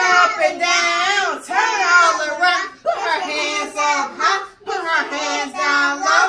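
Young children singing a song together, their voices continuous and overlapping.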